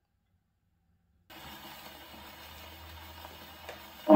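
Near silence, then about a second in a faint, steady surface hiss starts suddenly. It is a shellac 78 rpm record playing on an acoustic gramophone, the needle running in the lead-in groove before the music, with a low hum underneath and a single click near the end.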